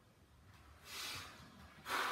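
A man's short, forceful breath out about a second in, the exhale of effort on a leg extension rep; a sharp breath begins right at the end.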